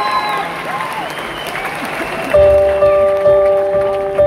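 Concert audience cheering and applauding, with shouted whoops. About two seconds in, the band starts a song: a keyboard chord repeated about twice a second over a low beat, suddenly louder than the crowd.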